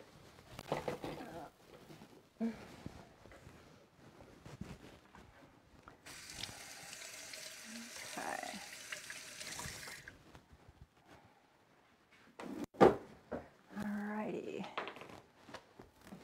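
Kitchen tap turned on, running for about four seconds and shut off. A few seconds later comes a single sharp knock, the loudest sound.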